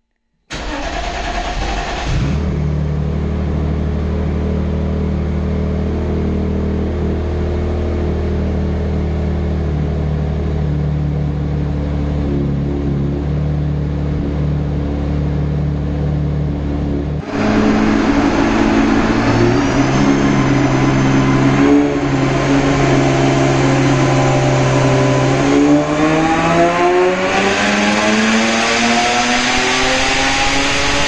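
Turbocharged BMW E36 M3 drift car engine running on a chassis dyno during tuning. For the first half it runs at a steady speed. After an abrupt change it settles at lower revs, and near the end its pitch climbs steadily as it revs up under load.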